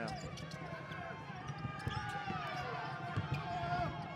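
Basketball game sound: a ball bouncing on the hardwood court with scattered sharp knocks, over a steady murmur of crowd voices.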